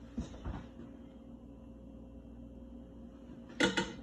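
Kitchen handling sounds over a steady low hum: a couple of soft bumps just after the start, then a brief clatter of several quick hard knocks near the end, like a utensil or container set down on the counter.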